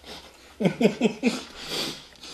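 A man laughing: four short bursts, each falling in pitch, followed by a breathy exhale.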